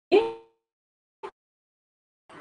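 A woman's voice: one short spoken syllable just after the start, then a faint brief click a little past the middle.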